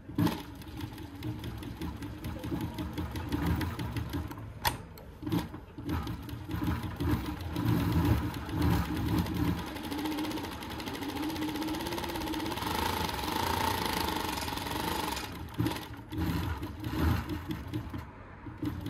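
Kansai FBX-1104PR four-needle chain-stitch waistband sewing machine stitching through a denim waistband, running in spurts with a couple of sharp clicks about five seconds in. It settles into a longer steady run in the second half that stops a few seconds before the end.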